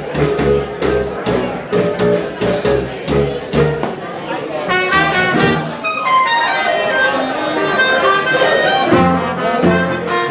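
Traditional New Orleans jazz band playing. Guitar, string bass and drums keep a steady beat, and about five seconds in the horns come in, with trumpet, clarinet and trombone playing together over the rhythm section.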